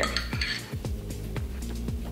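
A metal spoon clinking and scraping against a glass jar while scooping out apricot jam, over background music with a steady beat.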